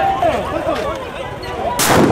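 Voices of a crowd, then one loud bang near the end from a riot-police tear-gas munition going off.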